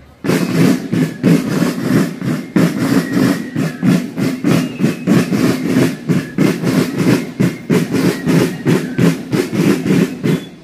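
Marching band drum section playing a steady march cadence of rapid, evenly repeated drum strikes.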